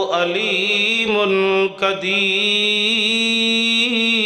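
A man's voice chanting a melodic religious recitation through a microphone, in long held notes that waver in pitch. There is a short pause for breath just before two seconds in.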